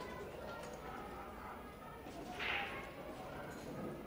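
A pool shot: the cue striking the cue ball and balls clicking and rolling on the table, over faint murmur in the hall. A short, louder scuffing noise comes a little past halfway.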